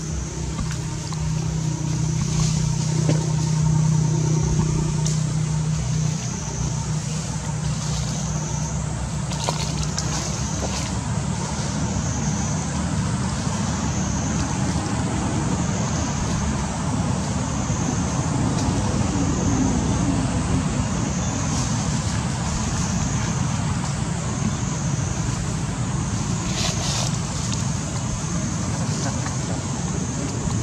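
Steady outdoor background noise: a low rumble with a faint high-pitched buzz that pulses every second or two, and a low hum that fades out about six seconds in.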